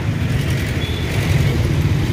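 Motorcycle tricycle's Honda engine running, heard from inside the sidecar with surrounding street traffic: a steady low rumble.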